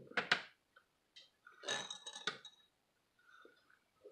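Close-up eating sounds from someone eating crab: a few sharp wet smacks just after the start, then a longer noisy suck around the middle as crab meat is pulled into the mouth.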